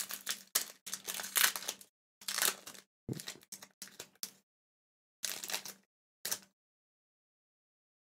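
Foil wrapper of a Pokémon TCG booster pack being torn open and crinkled, in several short bursts, stopping about two-thirds of the way through.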